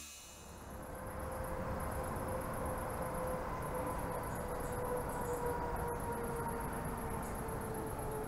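Night ambience: insects chirping in a fast, steady pulse high in pitch, over a low steady rumble of distant traffic and a faint sustained hum.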